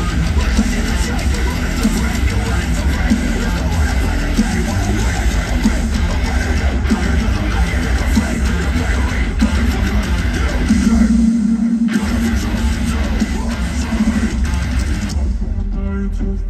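A metal band playing live through a festival PA: distorted electric guitars, bass and drums with no vocals. The lowest notes drop out briefly about eleven seconds in, and near the end the music thins to a sparser section.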